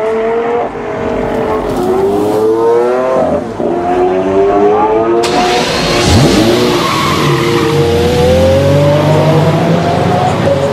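Lamborghini V12 engine revving hard under acceleration. Its pitch climbs and drops back at each of several gear changes, with one sharp drop about six seconds in.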